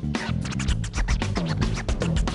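Live band music with drums and bass, and fast turntable scratching laid over it: quick back-and-forth strokes that glide up and down in pitch.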